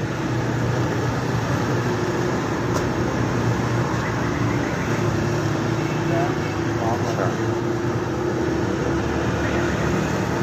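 A steady low hum of background machinery, with faint voices in the background.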